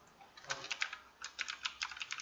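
Typing on a computer keyboard: a run of quick, irregular keystrokes starting about half a second in, with a brief pause near the middle.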